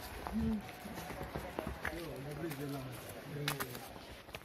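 Untranscribed voices talking, with footsteps and short scuffs on a rocky, stony path.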